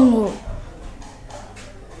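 A woman's drawn-out vocal 'aah' that falls in pitch and fades out within about half a second, followed by quiet room tone.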